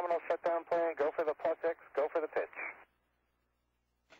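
A man's voice over the narrow-band air-to-ground radio link, speaking until almost three seconds in, then silence.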